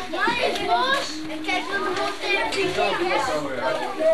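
Children's voices chattering and calling out over one another, high-pitched and overlapping, with no clear words.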